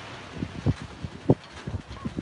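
Wind buffeting an outdoor microphone, with two short low thumps, one under a second in and another past a second in.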